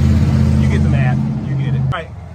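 A motor vehicle's engine running with a loud, steady low drone that cuts off abruptly near the end.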